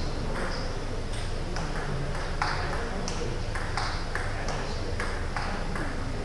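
Table tennis ball in a doubles rally, clicking sharply off the rackets and table about two to three times a second.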